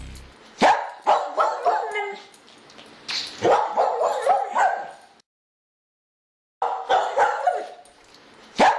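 A dog barking in quick runs of short barks, three runs in all, with a dead-silent gap of about a second and a half just past the middle.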